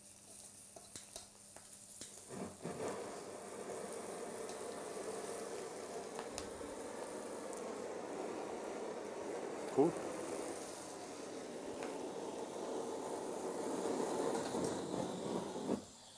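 Handheld gas kitchen blowtorch lit about two and a half seconds in, then burning steadily with a rushing hiss as it flames the surface of a fish fillet.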